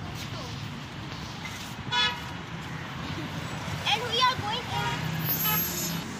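A car horn gives one short toot about two seconds in, over steady street traffic noise.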